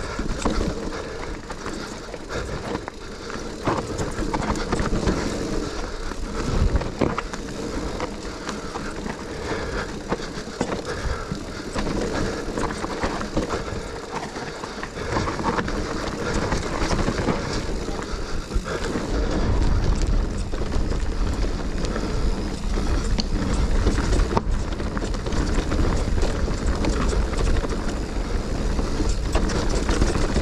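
Mountain bike descending a dirt trail: knobbly tyres rolling and skidding over dirt and roots, with the bike rattling over the bumps. A heavier low rumble from wind on the microphone comes in about two-thirds of the way through.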